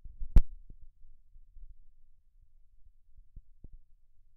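A single sharp click about half a second in, then low rumbling thumps and a few faint ticks: handling noise of a phone held in the hand, picked up by its own microphone.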